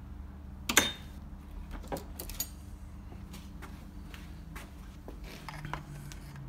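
A few sharp metallic clicks and clinks of a screwdriver working at a scooter's gearbox cover as it is levered off. The loudest comes about a second in, with a short ring, and all of it sits over a low steady hum.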